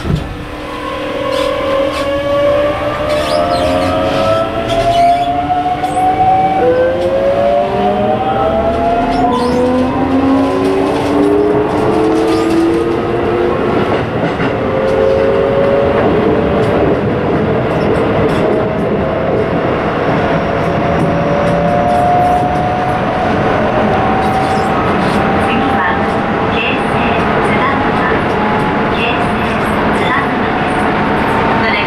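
Keisei 3700-series electric train pulling away from a stop. Its inverter-driven traction motors whine in several tones that climb in pitch step by step as it accelerates, over the rumble of wheels on rail. There is a brief knock at the very start.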